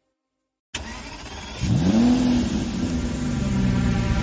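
A car engine revving: after a moment of silence it comes in suddenly, its pitch climbs quickly about a second later and then eases slowly down.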